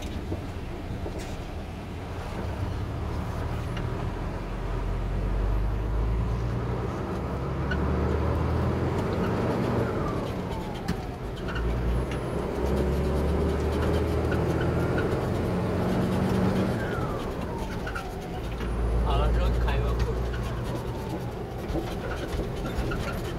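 A truck engine heard from inside the cab while driving slowly, its low note changing several times as the truck shifts and pulls away again. Two brief falling squeals come through, about halfway through and again near the end.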